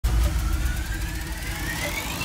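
Intro sound effect for an animated logo: a deep rumble under a rising sweep that climbs steadily in pitch.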